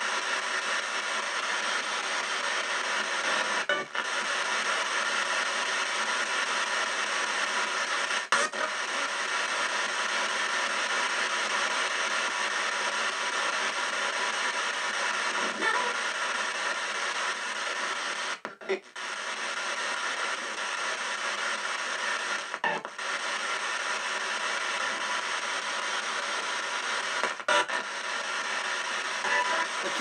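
Ghost box radio sweep playing through a small speaker: steady radio static, broken by several brief dropouts, with short fragments that sound like words.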